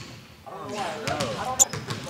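A basketball bouncing on a gym's hardwood floor under voices and laughter, with a brief high squeak about one and a half seconds in.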